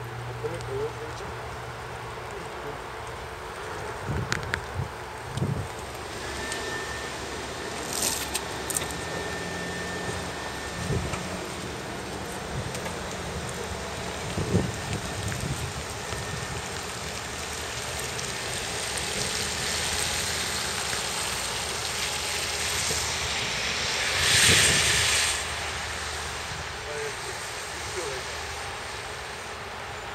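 Tesla Roadster Sport electric car pulling away almost silently on wet pavement. There is a faint high steady whine for a few seconds, then the hiss of tyres on the wet surface swells and is loudest briefly about twenty-five seconds in before fading.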